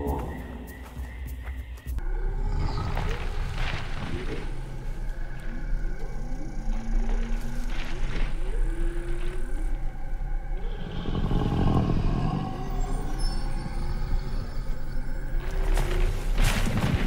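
Documentary soundtrack of music mixed with sound-designed dinosaur calls: many short calls that slide in pitch, over a low steady drone.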